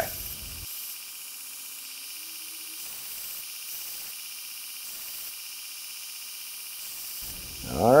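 Half-inch drill bit being ground against the abrasive belt of a running 2x72 belt grinder: a steady, high hiss of steel on the belt.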